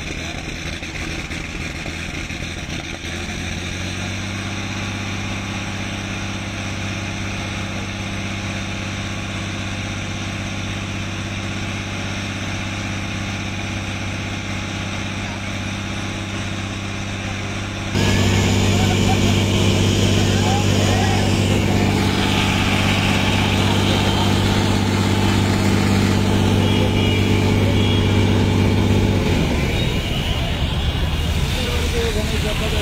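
Engine and pump of a Varun police water cannon truck running steadily with a low hum while it sprays a jet of water. The sound gets suddenly louder about two-thirds of the way through and the hum stops shortly before the end.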